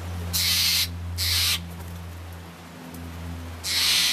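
Steller's jay giving three harsh, rasping calls, each about half a second long: two close together near the start and one near the end.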